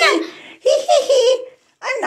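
Laughter: a short burst of voiced laughing about half a second in, fading out before the end.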